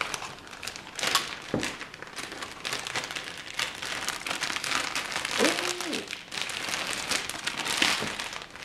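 Thin clear plastic packaging bag crinkling and rustling irregularly as it is handled, with a bundle of straight hair being worked in it.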